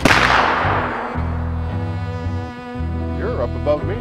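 Flintlock black-powder muzzleloader firing once, the report ringing out and fading over about a second and a half. Background music of low bowed strings plays throughout.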